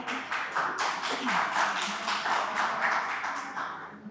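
Audience applauding, many hands clapping steadily and dying down near the end.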